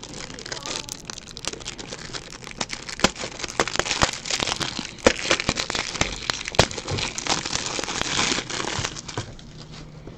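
Plastic shrink wrap on a pack of Ultra Pro 3" x 4" Super Thick toploaders crinkling and crackling as hands work at it, with many sharp clicks. It stops shortly before the end.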